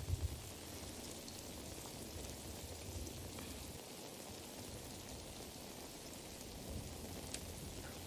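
Steady rain falling, a soft even hiss from the war drama's night-scene soundtrack, with a brief low rumble at the start.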